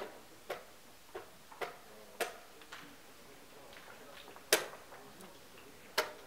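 Wooden chess pieces set down and digital chess clock buttons pressed during fast blitz play, heard as sharp, irregular clicks and knocks. The loudest comes about four and a half seconds in.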